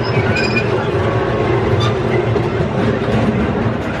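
Small amusement-park toy train running along its track, a steady rumble of its motor and wheels heard from aboard a carriage.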